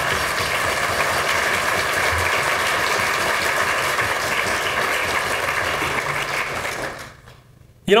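Audience applauding steadily, the clapping dying away about a second before the end.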